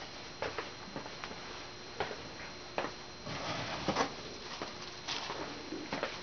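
A few faint, scattered clicks and light knocks over quiet room noise.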